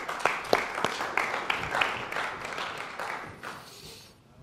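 Congregation applauding, fading out toward the end.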